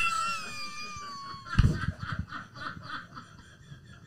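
People laughing hard: a high-pitched squeal that falls in pitch, then breathy giggling in quick rhythmic pulses, about six a second, that fades away.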